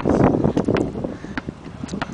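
A basketball dribbled on asphalt: about four sharp bounces, a little over half a second apart.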